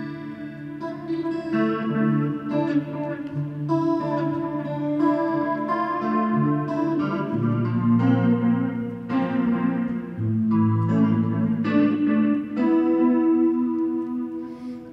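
Electric guitar played through an amplifier with effects, sustained ringing chords that change about once a second.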